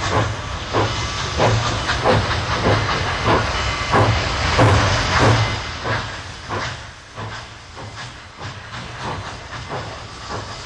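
Illinois Central 4-8-2 steam locomotive accelerating with a heavy train, its exhaust chuffing in a steady beat of about three every two seconds over steam hiss. The chuffs grow fainter from about six seconds in as the engine pulls away.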